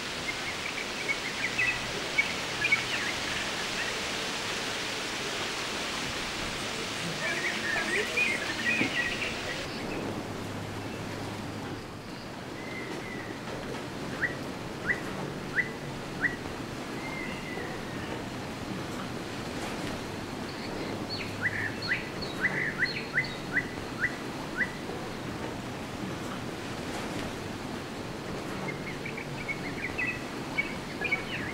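Outdoor ambience with small birds chirping in several short runs of sharp calls over a steady hiss. The hiss thins out abruptly about ten seconds in.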